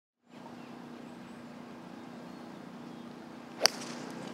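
A steady low hum of outdoor background, then about three and a half seconds in a single sharp crack as a golf club head strikes the ball on a full-swing fairway approach shot.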